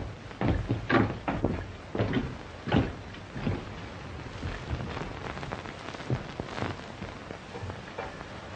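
Irregular knocks and thuds of footsteps on a wooden floor as men walk into the room, thickest in the first three seconds and then fading, over the steady hiss of an old film soundtrack.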